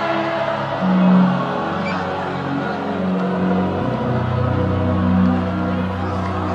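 Slow live worship music with no singing: sustained chords held steadily, with a deeper bass note coming in about four seconds in.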